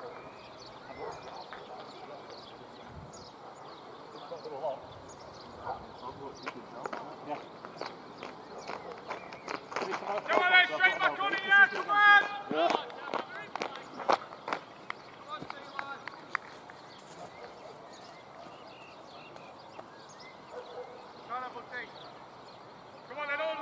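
Indistinct voices of players calling on an open cricket field, loudest in a stretch of shouting about halfway through, over a faint outdoor background with scattered light knocks.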